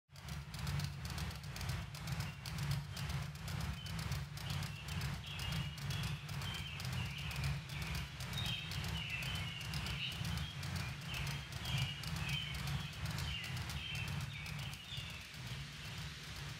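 Ceiling fan running, with a low steady hum and a rhythmic ticking several times a second from the turning blades. Short high chirps sound over it from about four seconds in.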